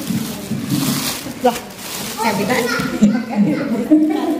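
People talking in a room, with a crinkly plastic bag being handled in the first second or so.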